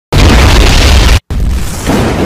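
Loud booming, explosion-like sound effect for an intro's lightning and energy-ball animation: a dense, heavy rush of noise that cuts out for a split second just over a second in, then carries on.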